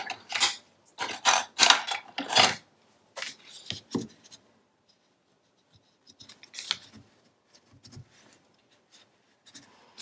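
A bone folder rubbed over cardstock in a series of short, quick scraping strokes, burnishing the paper down. The strokes come in a busy run at the start, another group a few seconds in, then fainter and more scattered after a short pause.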